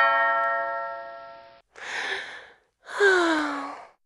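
A bell-like chime rings out and fades over about a second and a half, then a breathy gasp and a sighing vocal 'ah' that slides down in pitch.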